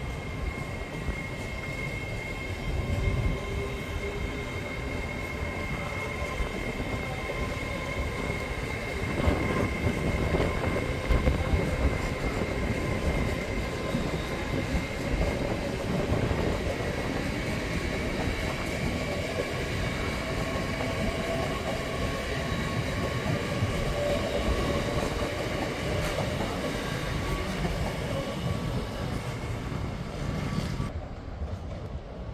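LNER Azuma train running along the line beside the platform: a steady rumble of wheels on rail with a whine held above it, loudest about a third of the way in.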